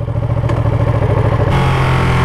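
Ducati Panigale's L-twin engine running just off idle, heard close from on board. The revs step up about one and a half seconds in as the bike pulls away.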